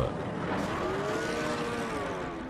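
A motor vehicle's engine and road noise from a film soundtrack, steady, with a faint whining tone that rises and then falls.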